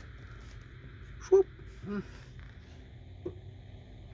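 Two brief wordless vocal sounds from a man, a short hum or murmur about a second in and a weaker one just after, over a faint steady low background noise.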